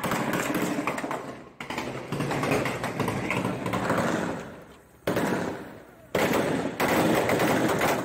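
Gunfire recorded on a phone during a street shootout: dense, rapid automatic-weapon fire that breaks off and restarts abruptly several times, with voices mixed in.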